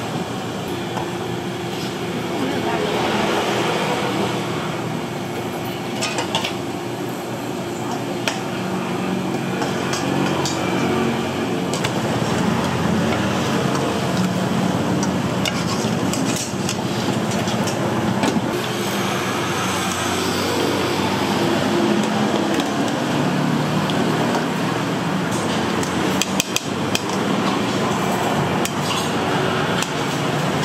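Food-stall kitchen clatter: scattered knocks and clinks of a cleaver on a wooden block, and a metal strainer and plates against steel pots, as greens are blanched and served. The clatter comes more often in the second half.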